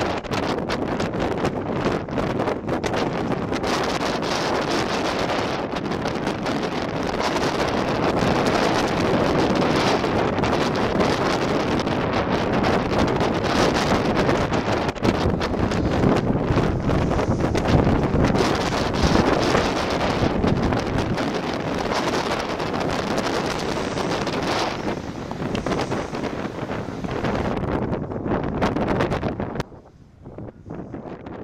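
Wind buffeting the camera's microphone: a loud, steady rushing noise that stops abruptly just before the end.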